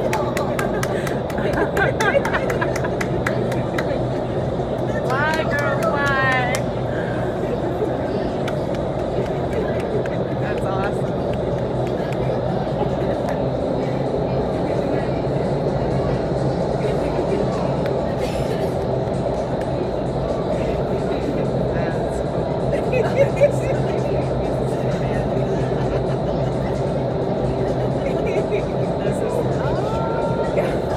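Indoor skydiving wind tunnel's fans and airflow running steadily: an even rush of air with a low, constant hum.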